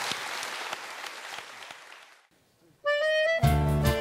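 Audience applause fading away over about two seconds, a brief hush, then a single held accordion note just before the band comes in: accordion, nylon-string acoustic guitars and a pandeiro frame drum playing a northeastern Brazilian song with a steady beat.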